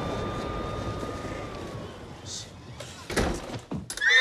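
Steady hum of distant highway traffic with a faint thin tone over it, fading away over the first two and a half seconds. A few sharp knocks and thumps follow near the end.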